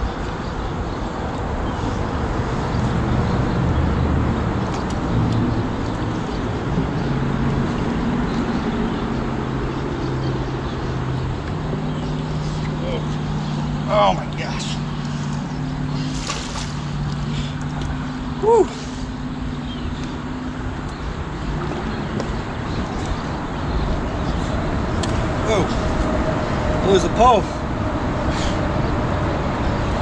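Steady hum of road traffic with low engine drones shifting in pitch. A few short vocal grunts or exclamations break in, about 14 and 18 seconds in and again near the end.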